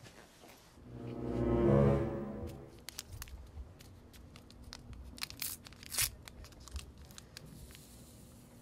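A short swelling musical chord about a second in, followed by a small paper packet being crinkled and torn open, a run of sharp crackles.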